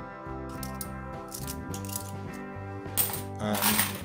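Background music with 50p coins clinking against each other as they are flipped through in the hand, with a louder clatter of coins near the end.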